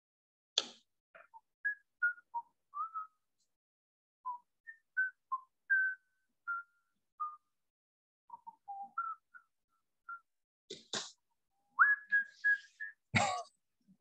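Whistling: a string of short notes at varying pitch, with one rising note near the end, broken by a few sharp clicks.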